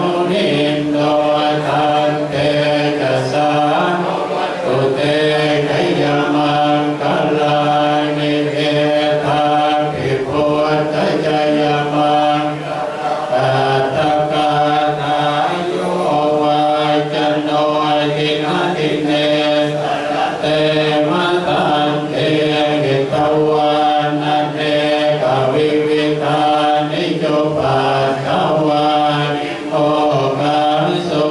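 A group of Thai Buddhist monks chanting together in unison, holding long, steady notes, with a brief pause for breath about halfway through and again near the end.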